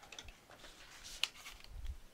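Kraft cardstock being handled and folded on a tabletop: quiet paper rustles, a sharp tick about a second in and a soft bump near the end.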